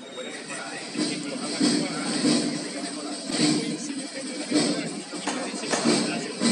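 Costaleros under a practice float shuffling their feet along the pavement in step (the racheo), a rhythmic scrape about every two-thirds of a second that starts about a second in, over crowd voices and music.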